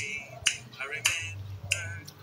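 Fingers snapping in a steady rhythm, four snaps about every 0.6 seconds, each with a short ringing tail.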